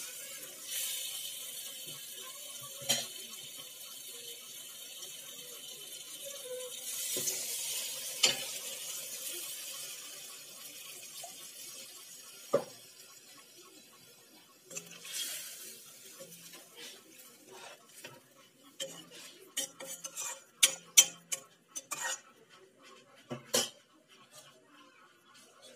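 Onion-tomato masala sizzling in an aluminium kadai while a metal spatula stirs it, knocking against the pan a few times. The sizzle fades away about halfway through, and the last seconds hold a quick run of sharp metal clinks and taps against the pan.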